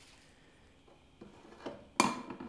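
Almost quiet room for about a second, then faint handling noises as parts of a small 3D printer are fitted, ending in one sharp click.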